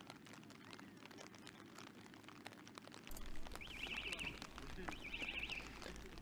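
Faint open-air ambience: light rain pattering and distant murmured voices, with two short high warbling trills a little past halfway.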